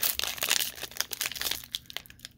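Foil wrapper of a trading-card pack crinkling and tearing as it is peeled open by hand: a dense run of crackles that thins out near the end.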